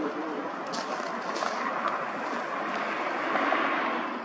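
Street traffic noise, with a vehicle passing close that swells toward the end and falls away.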